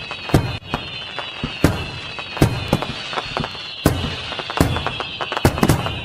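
Fireworks going off: sharp bangs about two to three a second at uneven intervals, over a high whistling that slowly falls in pitch.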